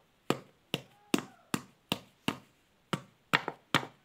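A steady run of sharp taps, about ten of them at roughly two or three a second, from a small hand-held object striking a hard surface as a child works it in his lap.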